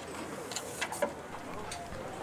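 Outdoor background ambience with faint distant voices and a few light knocks and clicks.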